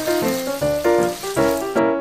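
Background music, a melody of short notes, over a steady hiss of water pouring from a watering can, added as a sound effect; the pouring stops near the end.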